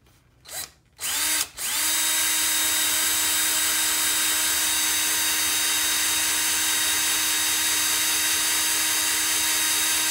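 Electric drill boring a hole through the end of a camera stabilizer handle with a twist bit: a short burst about a second in, then the drill running at a constant speed with a steady whine.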